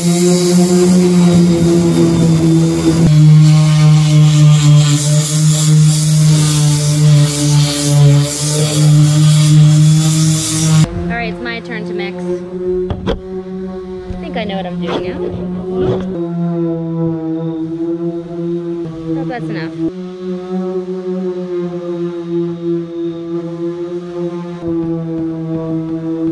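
Bosch electric detail sander running on a hardened body-filler patch on a bus's metal roof, a loud steady hiss that stops about eleven seconds in. Background music with a sustained low chord that shifts every few seconds plays underneath and carries on after the sander stops.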